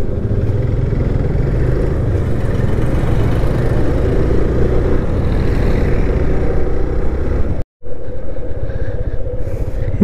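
Motorcycle engine running steadily while riding, mixed with wind and road noise on the bike-mounted camera's microphone. The sound cuts out completely for a split second about three-quarters of the way through.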